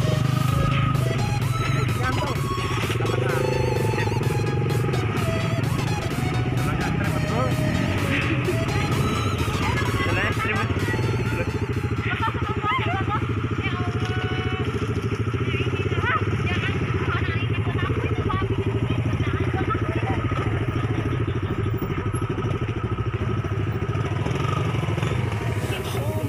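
Small motorcycle engines running at low speed through mud, overlaid with background music that has a singing voice.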